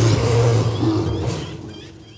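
A long, rough roaring shout from an animated Yeti character, with a deep steady rumble under it, trailing off over the last second.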